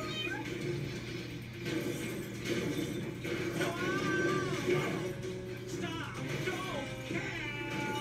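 Cartoon kittens meowing over background music, heard through a television's speaker, with a man's shouted voice among them.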